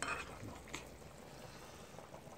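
Faint background hiss with a couple of light clicks of a metal spoon against a ceramic bowl, one at the start and one under a second in.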